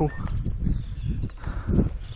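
Low, uneven rumbling of wind buffeting a handheld camera's microphone as the walker moves along, with a faint bird call early on.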